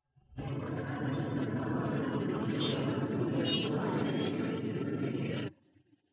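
Road traffic noise with a steady rumble, cutting in abruptly near the start and cutting off abruptly near the end.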